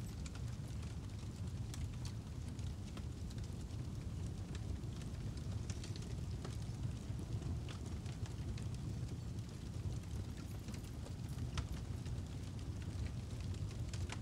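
Fire sound effect: a steady low rumble of flames with scattered faint crackles.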